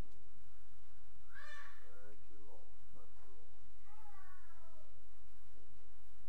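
A person's voice making a few short, high-pitched vocal sounds, over a steady low hum.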